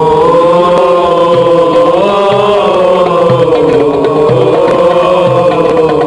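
Football ultras crowd chanting a song in unison, many voices on one sustained, wavering melody, starting abruptly. A drum beats about once a second underneath.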